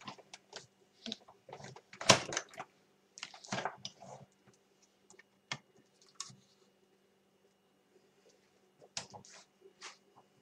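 Irregular clicks, knocks and paper rustles of acrylic cutting plates and paper being handled as the die-cut stack comes out of a Sizzix Big Shot manual die-cutting machine and is taken apart, with the loudest clack about two seconds in.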